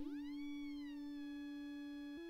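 Synton Fénix 2 analog synthesizer holding a quiet sustained tone. Its upper overtones glide up and ease back down in the first second, then hold steady over a constant low pitch.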